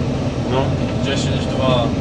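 Combine harvester running steadily under load while cutting and threshing oats, heard from inside the cab as a constant low drone, with voices talking over it.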